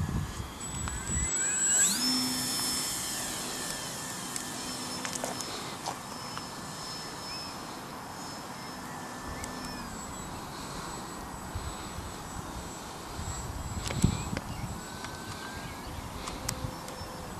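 Electric motor and propeller whine of a ParkZone F4U Corsair RC model plane. The pitch rises sharply and the sound is loudest about two seconds in as the throttle opens, then holds as a steady whine while the plane climbs away, easing down slightly near ten seconds. A sharp knock sounds about fourteen seconds in.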